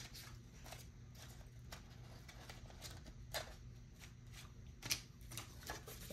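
Faint rustling and light taps of paper cards being handled on a desk, with a few sharper ticks, the clearest near five seconds in, over a low steady hum.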